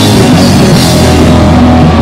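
Punk rock band playing very loud: distorted guitar and bass over a drum kit, with cymbal crashes recurring about every half second.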